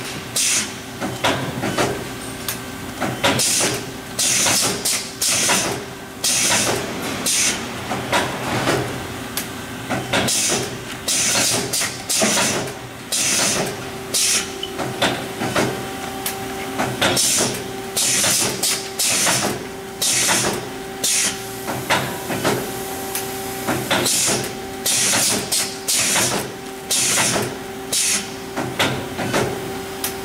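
Automatic bag-making and sealing machine running: short, sharp hisses of compressed air from its pneumatic actuators, about one to two a second at an uneven pace, over a steady mechanical hum.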